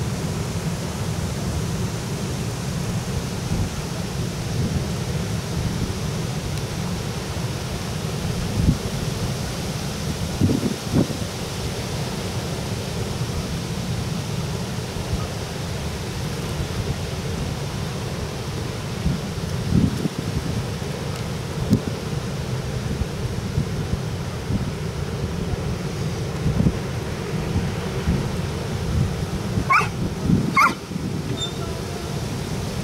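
Wind buffeting the microphone: a steady low rumble with irregular gusty bumps.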